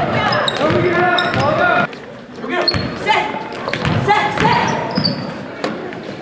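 A basketball being dribbled on a hardwood gym floor, with repeated bounces under players' and spectators' voices.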